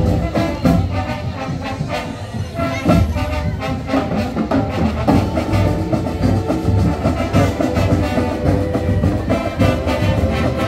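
Marching band playing: brass, including sousaphones, over a steady drum beat.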